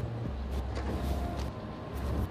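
A steady low rumble, like a vehicle running, with a few faint clicks.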